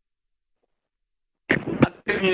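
Dead silence for about a second and a half, then a brief, loud cough near the end, over a conference-call audio line.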